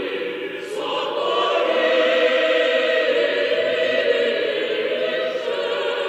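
Russian Orthodox church choir singing unaccompanied liturgical chant in sustained chords, swelling louder about a second in.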